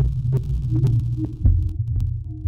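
Generative electronic music from a software synthesizer sequenced by Orca: a deep, throbbing bass drone with short clicking percussive hits at uneven intervals and a heavier low hit about one and a half seconds in.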